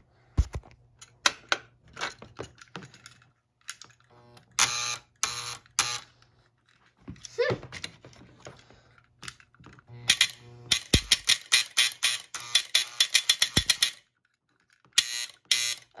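A model-train operating car's electrical mechanism, worked from its control button, buzzing in short bursts and then giving a fast run of clicks for about three seconds, over a low steady hum. The automatic coupler is shorting out and starting to smoke.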